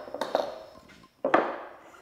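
Clamps and tools clattering as they are handled on a wooden workbench, then one sharp knock, the loudest sound, as a block of 2x4 is set down on the bench top.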